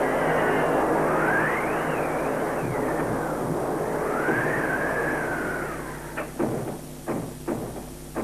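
Howling wind, a rushing gust with whistling tones that rise and fall, dying away about six seconds in. Several sharp knocks follow.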